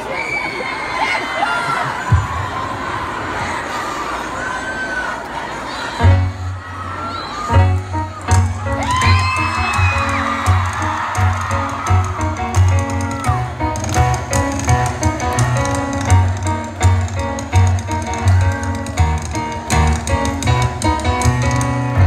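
Concert crowd screaming and cheering with high whoops. About six seconds in, a live song starts over it: heavy pulsing bass and keyboard notes, with the crowd still shouting.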